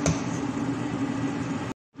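Steady kitchen hum and hiss around a pot of broth boiling hard on a gas stove, with a sharp click at the start. The sound cuts off abruptly near the end.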